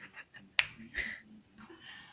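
Sharp clicks and taps as a cat scrambles round inside a round tub on a wooden floor: a few quick ticks, then a loud click a little over half a second in and another about a second in.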